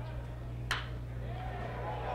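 One sharp crack of a metal baseball bat hitting a pitched ball about two-thirds of a second in, with a brief ring after it, over a steady low hum.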